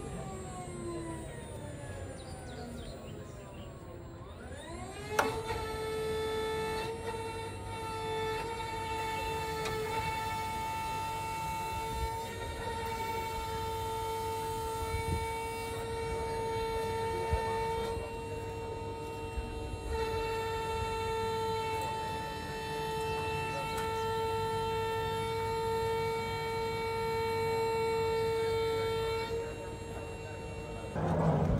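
Whine of a Malwa electric forwarder-harvester's motor-driven hydraulics as its crane moves the grapple. The pitch sinks over the first few seconds, then climbs quickly about five seconds in with a sharp click, and after that holds one steady tone.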